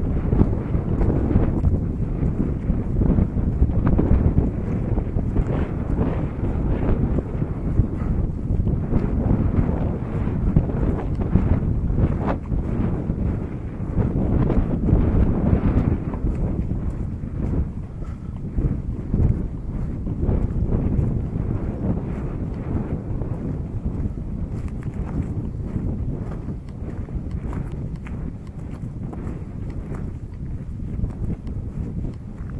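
Wind buffeting the camera microphone in gusts, with footsteps crunching on a stony dirt track. The wind noise eases somewhat after about sixteen seconds.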